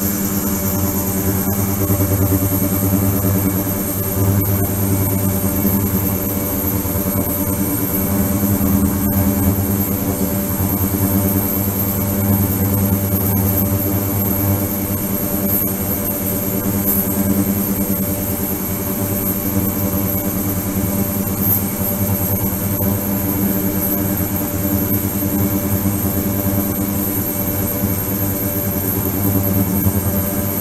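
Ultrasonic cleaning tank running: a steady buzzing hum with a thin, high whine above it.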